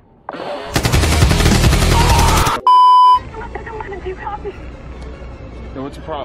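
A loud, rapid rattling burst lasting about two seconds, cut off abruptly by a short, steady censor bleep at about 1 kHz; lower background sound follows.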